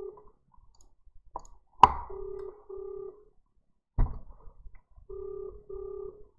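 Australian-style double-ring telephone ringback tone heard through a handset: pairs of short beeps repeating about every three seconds while an outgoing call waits to be answered. Sharp knocks from the handset being handled come just before the second ring, the loudest sound, and again about four seconds in.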